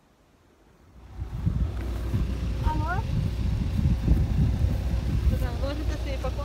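Near silence for about a second, then wind buffeting the microphone in an uneven low rumble, with short snatches of voices over it.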